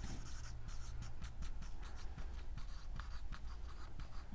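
Marker writing on a whiteboard: an irregular run of short, quick strokes as words are written out, over a low steady hum.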